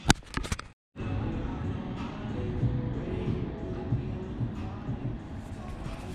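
Camera being handled: a quick run of clicks and knocks as a hand grabs and covers the camera, then, after a brief break, a steady low rumble of handling noise as the camera is moved.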